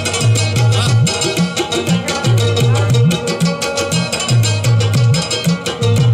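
Live traditional Balochi folk music with no singing: a hand drum beats a steady, quick rhythm of deep strokes under a busy melodic instrument.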